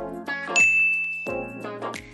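A single bright ding that starts sharply about half a second in and rings for about a second, over steady background music.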